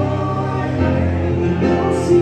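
Live rock band playing a song, with electric guitars and singing.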